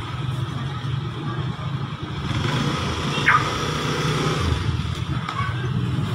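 Low, steady engine rumble, like a motor scooter idling, with one brief high squeal about three seconds in.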